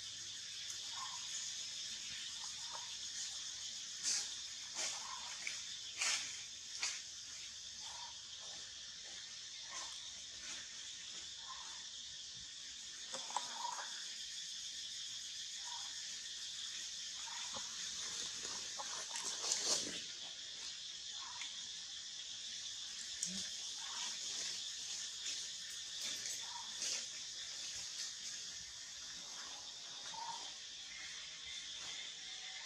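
Forest ambience: a steady high-pitched insect drone, with a short faint call repeating about every second and a half. Several sharp crackles stand out in the first few seconds and again about two-thirds of the way through.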